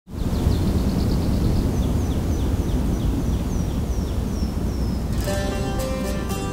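Low rumbling outdoor ambience with a bird chirping in quick repeated notes, each falling in pitch. About five seconds in, plucked acoustic guitar music comes in as intro music.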